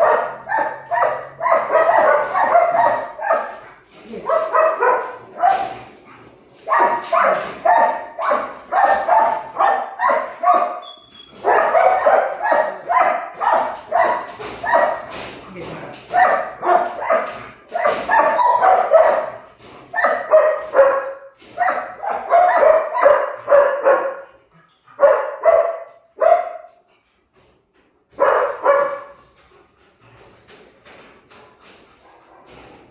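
A dog barking rapidly and repeatedly, several high barks a second in bouts of one to three seconds. The bouts grow shorter and further apart near the end.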